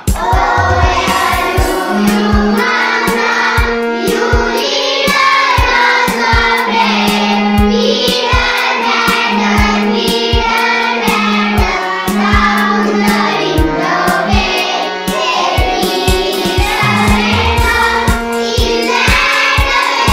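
A class of young schoolchildren singing an English action rhyme together in chorus, over a steady beat and held low accompanying notes.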